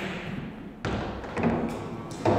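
Pool shot on a pool table: a sharp knock of cue and balls a little under a second in, followed by a thud of a ball.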